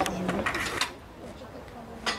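Faint background voices with a few short knocks and scrapes in the first second, then quieter.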